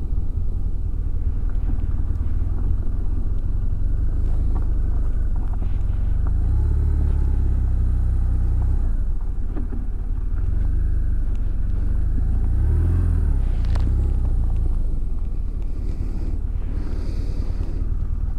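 Motorcycle engine running at low speed as the bike pulls in and manoeuvres to a stop, a steady low rumble that grows louder twice, about a third and about two-thirds of the way through.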